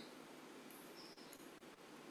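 Near silence: faint room tone with a few very faint clicks a little past halfway through.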